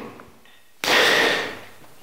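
A man breathing out once, a short, loud puff of breath into a head-worn microphone about a second in.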